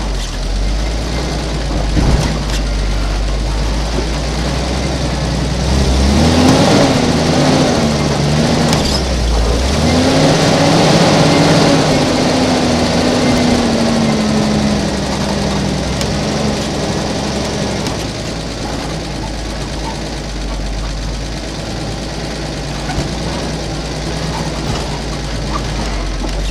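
Toyota Land Cruiser FJ45 engine running as the truck crawls over rocks. The revs climb and ease off several times between about six and eighteen seconds in, then settle back to a low, steady rumble, with a few sharp knocks along the way.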